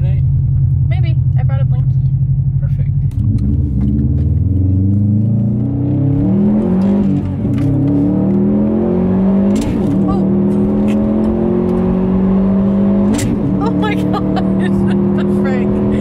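Car engine heard from inside the cabin, running steadily at first. About three seconds in it pulls away, its note climbing and then dropping several times as the driver shifts up through the gears.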